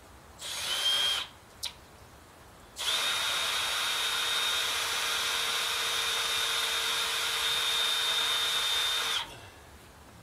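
Power drill working into the timber wall framing: a short burst with a rising whine, a brief blip, then one steady run of about six seconds that cuts off.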